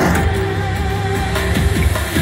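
Enhanced Money Link slot machine playing its electronic feature music, with a sharp hit at the start, as gold lock symbols hold on the reels and the rest spin for the bonus.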